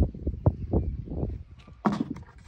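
Handling noise: a run of dull bumps and knocks around a white plastic five-gallon bucket, with a sharper knock near the end.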